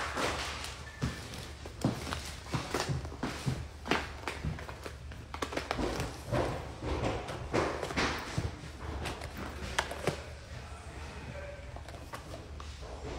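Irregular thumps, knocks and rustling close to a phone's microphone, the sound of someone moving about and handling things nearby.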